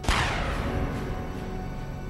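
A single sudden bang that rings out and fades over about a second and a half, over dark, tense music.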